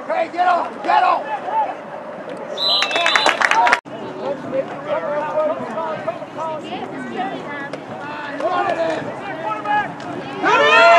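Overlapping voices of spectators and players shouting and talking, a crowd's mixed chatter. About three seconds in, a louder burst of shouting rises and then cuts off abruptly.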